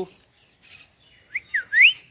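Indian ringneck parakeet giving three quick chirps in the second half, one rising, one falling, then a louder rising one.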